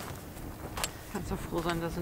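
A few small clicks and light rustling from hands handling fishing tackle and bait over a low, steady rumble; a man's voice starts speaking in the second half.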